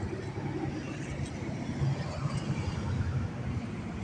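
Steady low outdoor rumble with no distinct events.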